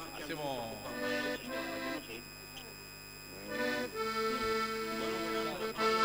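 Live band music from the stage, fairly quiet: an instrument holding chords, briefly about a second in, then a longer sustained chord from about three and a half seconds in.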